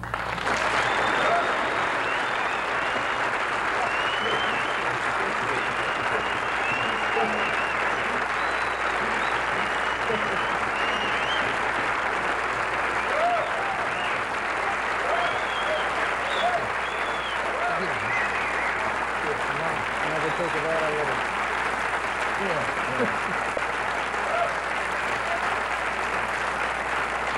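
A large audience applauding and cheering. The clapping starts suddenly and keeps up steadily, with shouts and whistles rising over it.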